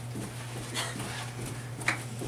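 A person doing jumping jacks: faint, noisy strokes of movement about once a second.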